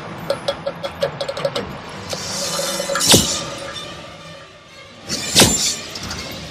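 Film trailer score: quick, evenly spaced ticking percussion, then a swell and two loud hits, about three and five and a half seconds in.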